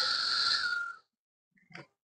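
A man's drawn-out hissing "s" trailing off the end of a spoken "peace", fading out about a second in. A faint short click comes near the end.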